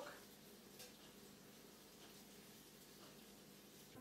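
Near silence: faint steady room hiss, with one small tick about a second in.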